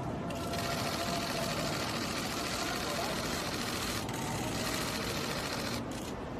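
Faint, distant voices over a steady rushing hiss of open-air ambience picked up by a phone microphone.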